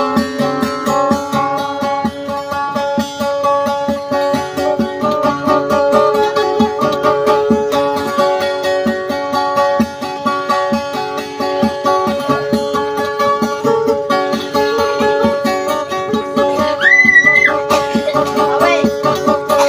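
Acoustic guitar played solo in a fast, rapidly repeated picking style over steadily ringing notes. Near the end a brief high held note sounds over it and is the loudest moment.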